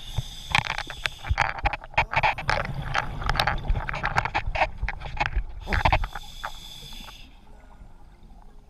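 Underwater bubbling and crackling of a scuba diver's exhaled breath leaving the regulator, a dense burst of gurgles and clicks that lasts about six seconds and then dies down.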